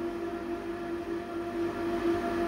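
Union XL8015E dry-cleaning machine running its wash stage, with perchloroethylene circulating from the cage to tank one: a steady mechanical hum.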